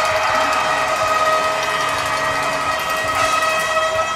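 Arena goal horn sounding one long steady note over a cheering crowd, signalling a goal just scored by the home team.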